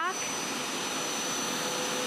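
Hoover Power Scrub Elite carpet cleaner running as it is pushed across a carpet: a steady motor and suction whir with a faint steady whine.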